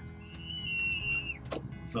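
A child's high-pitched scream, one held note of about a second, faint and far off, over quiet background music.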